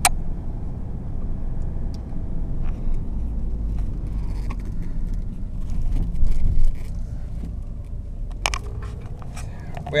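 Car running on the road, heard from inside the cabin as a steady low rumble of engine and tyres, with a louder swell about six seconds in and a sharp knock near the end.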